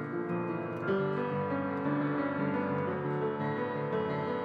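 Background piano music, a steady run of notes that grows a little louder about a second in.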